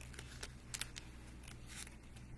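Faint rustling of thin Bible pages being turned while looking up a verse, in a few short crisp bursts, over a low steady hum.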